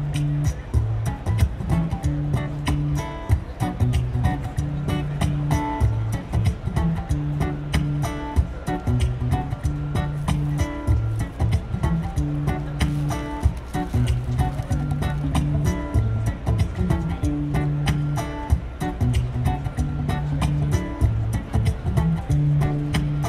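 Acoustic guitar played live, a rhythmic strummed chord pattern with sharp percussive strokes. The passage is instrumental, without singing.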